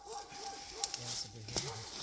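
A person's quiet voice making short sounds repeated evenly, about five a second, with two sharp clicks, one near the middle and one later.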